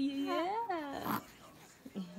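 A baby cooing: one long wavering 'aah' that rises and falls and ends about a second in, followed by a short breathy burst.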